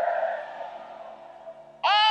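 A brief pause in a man's preaching. His voice fades out with a short echo in the first half second, faint low steady background tones hang underneath, and he starts speaking again near the end.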